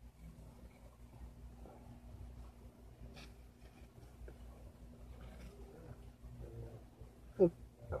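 Faint scraping and rustling of a Smith & Wesson tactical knife blade being pushed through a sheet of paper card held in the hand, with the card folding under the blade rather than cutting cleanly. A low steady hum runs underneath, and a few faint short pitched sounds come near the end.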